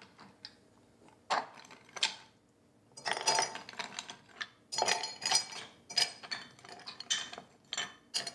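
Ice cubes clinking against glass as they are taken from a glass bowl and dropped into a tall drinking glass: two single clinks about a second in, then a busier run of clinks through the second half.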